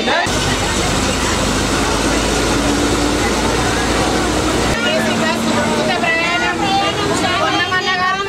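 Inside an RTC bus: the engine's low rumble and cabin noise under passengers' voices, the rumble stopping about halfway through and leaving the passengers' chatter.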